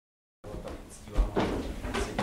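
Room sound cuts in from silence about half a second in, followed by a heavy thump a little past one second and a few lighter knocks, like objects being handled.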